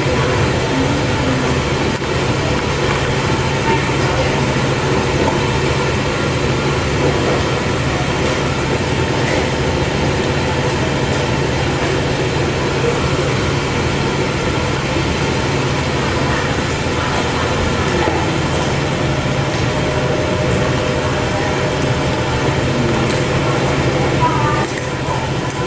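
Loud, steady din of factory machinery with a constant low hum underneath, unchanging throughout.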